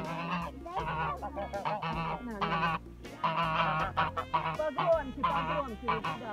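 Domestic geese honking, many short calls overlapping one after another.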